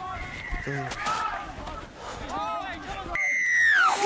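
Players shouting short calls across a rugby league field during play. Near the end comes a loud, high, steady tone, like a whistle, that lasts under a second and drops in pitch as it stops.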